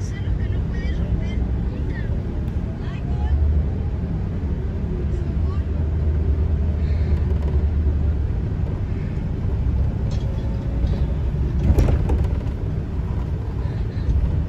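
Steady low road rumble of a moving vehicle as heard from inside the cabin, with a brief rattle about twelve seconds in.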